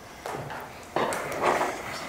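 Meeting-room movement noise: a sudden thud about a second in, with shuffling and scattered clicks around it.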